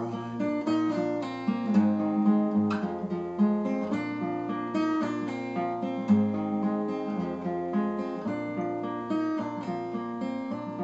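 Steel-string acoustic guitar played solo: an instrumental break of picked notes over a moving bass line, between the sung verses of a traditional folk song.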